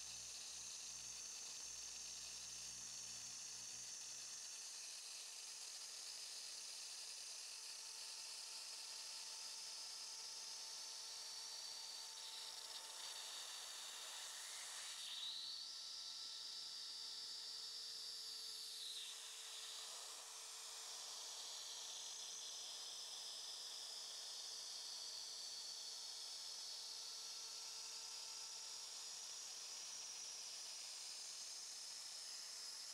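Shaper Origin handheld CNC router running with a steady hiss and hum as it cuts the inside edge of a pocket in wood. About halfway through, a higher whine rises, holds for about four seconds and falls away.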